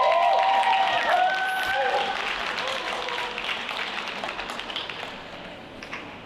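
Audience applause after the end of an obedience exercise, loudest at first and fading away over about five seconds. High-pitched voice calls ring out over it in the first two seconds.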